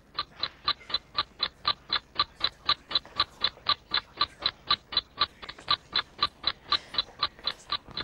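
Ticking countdown timer, a steady, clock-like tick at about four ticks a second, counting off a team's time to prepare its answer.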